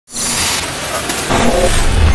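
Intro sound effect for an animated logo: a loud noisy whoosh starts abruptly, then swells with a deepening low rumble toward the end.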